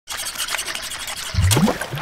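Shallow water splashing and trickling in a flooded shower tray as a wire coat hanger is worked in the blocked drain, a busy crackle of small splashes. About one and a half seconds in, there is a short low sound rising in pitch.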